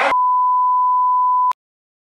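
A single steady electronic beep at one pitch, lasting about a second and a half and cutting off suddenly. Hip-hop music stops abruptly just as it begins.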